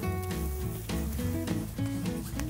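Background music: a light, plucked-string tune over a steady bass beat.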